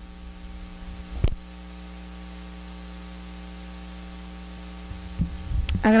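Steady electrical mains hum with its stack of overtones, carried through the microphone and sound system. There is a single knock about a second in.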